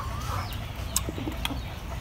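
Chickens clucking, with one short call near the start, and a couple of sharp clicks about a second in.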